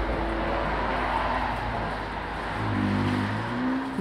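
Steady rush of freeway traffic with a low rumble, with a few soft sustained notes of ambient music beneath it, clearest near the end.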